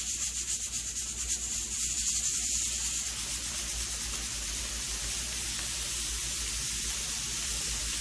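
Pressure cooker's weight valve letting out steam in a fast, pulsing hiss; about three seconds in this gives way to an even sizzle of chopped onions frying in a pan.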